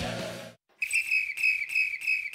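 Guitar rock music fades out at the start. After a short gap, a run of short, same-pitched high whistle notes begins, about three a second.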